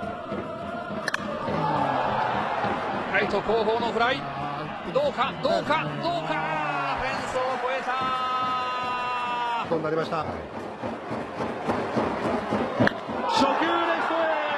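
Broadcast commentators talking over stadium crowd noise. About eight seconds in, a steady held tone with several pitches sounds for under two seconds.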